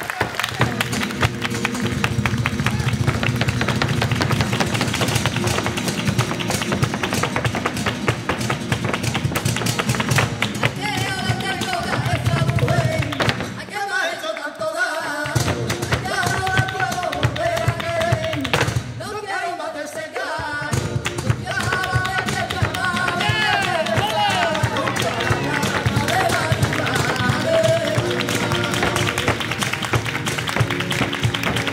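Flamenco soleá: guitar with dense percussive taps starts at once, and a singer comes in about 11 seconds in with long, wavering melismatic lines.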